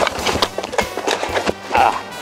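Kick scooter wheels clattering over asphalt in a run of short, irregular clicks, over background music.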